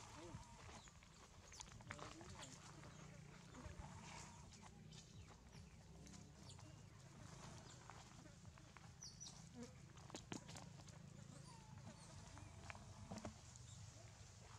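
Near silence with faint scattered crackles of dry leaves and twigs as a baby macaque moves on the leaf litter, over a low steady hum.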